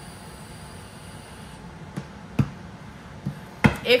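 Two light knocks of objects handled on a wooden tabletop, the second sharper and louder just before the end, over quiet room tone.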